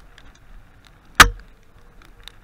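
A mountain bike jolting over a rough snowy forest trail: one sharp, loud knock a little past a second in, over faint ticks and low rumble from the bike rolling along.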